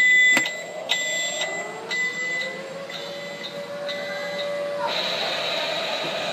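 Electronic sound effect from a Halloween animatronic prop's built-in speaker, starting suddenly: an alarm-like buzzing tone that pulses about once a second over a slowly rising tone, which turns noisier near the end.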